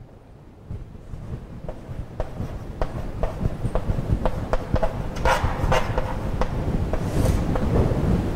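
Chalk writing on a blackboard: a run of short, sharp taps and scrapes about twice a second as words are written, over a low rumble that grows louder.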